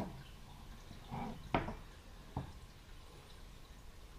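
Faint handling sounds as a two-piece metal soft-plastic bait mold is pulled apart and the freshly injected fluke tails are taken out: a soft knock about a second in, then two sharp little clicks.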